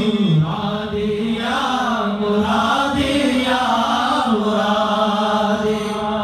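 Sufi dhikr chanted by men's voices on long, drawn-out notes, the pitch shifting every second or two.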